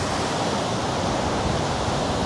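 Ocean surf breaking on the beach: a steady, even wash of noise.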